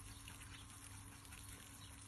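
Near silence: faint steady outdoor background noise with a low hum.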